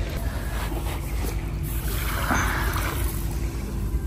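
Harbour beach ambience: a steady low rumble with wind on the microphone. A faint steady hum of a distant boat engine fades out about two and a half seconds in, and a soft wash of surf swells about two seconds in.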